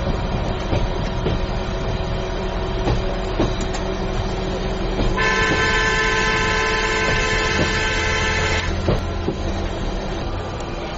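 Inside a dual-mode vehicle (a minibus running on railway track): steady running noise with occasional clicks from the rails, then, about five seconds in, one long blast of the vehicle's horn lasting about three and a half seconds, sounded by the rail driver.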